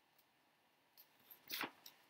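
A magazine page being turned: a single short papery swish about a second and a half in, with a couple of faint ticks around it, otherwise near silence.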